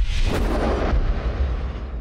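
Sound-effect sting of an animated logo ident: a deep cinematic boom with a rushing whoosh, the low rumble dying away slowly over about three seconds before cutting off.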